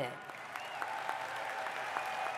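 A large audience applauding steadily in a hall.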